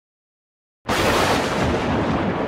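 A loud booming noise effect that cuts in suddenly out of silence nearly a second in, holds steady, then begins slowly to fade.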